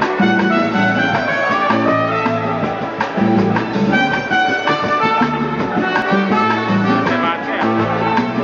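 A band playing Latin-style dance music: brass horns playing held notes over a repeating bass line, with percussion hits throughout.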